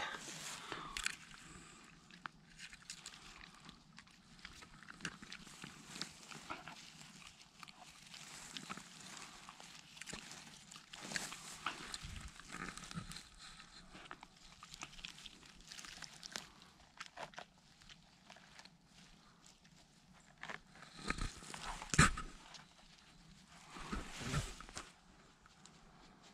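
Soft rustling and crackling of grass, moss and forest litter as a gloved hand works around a king bolete and picks it, with a few louder handling noises near the end.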